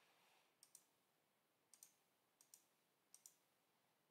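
Four faint computer mouse clicks, each a quick pair of ticks, spaced about a second apart.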